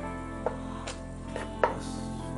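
Large kitchen knife chopping through a whole pomfret onto a wooden chopping board: a few sharp knocks, the loudest about one and a half seconds in. Soft background music underneath.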